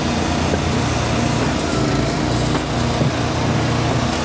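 Small gas engine of an Eastonmade firewood splitter running steadily at constant speed, driving the splitter's hydraulics while it is in use on a four-way wedge.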